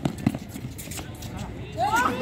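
A few irregular thuds of a basketball and players' running feet on a hard outdoor court during a drive to the basket. A shout rises in pitch near the end.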